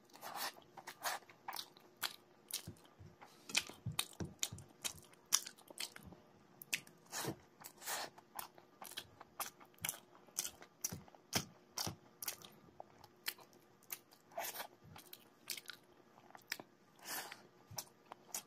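Close-miked eating sounds: a person chewing a mouthful of rice and curry by hand, with wet mouth smacks and clicks coming irregularly several times a second.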